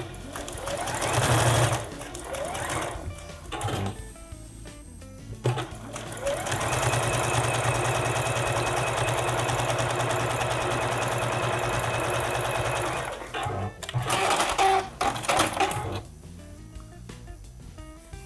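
Domestic sewing machine stitching straight quilting lines through a fabric panel and its batting. It runs briefly near the start, steadily for about seven seconds in the middle, and in a short burst again near the end.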